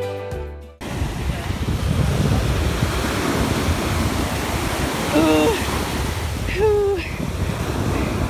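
Ocean surf washing up the beach, a continuous rushing wash with a low rumble, with wind buffeting the microphone. Background music cuts off suddenly under a second in.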